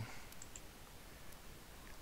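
Quiet room tone with a few faint clicks from a computer mouse.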